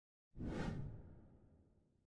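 A whoosh sound effect with a low rumble under it, for an animated logo sweeping in. It starts suddenly about a third of a second in and fades away over about a second and a half.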